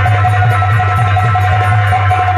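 Nautanki stage band music: low, rapid drumming under a single sustained high note.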